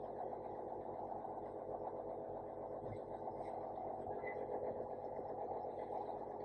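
Faint steady machine hum made of many fine tones below about 1 kHz: the endoscopy unit's air pump running, blowing air through the Olympus endoscope's air and water channels to dry them before storage.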